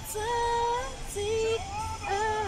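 Music with a woman's singing voice: held notes stepping up and down in pitch, over a low rumble.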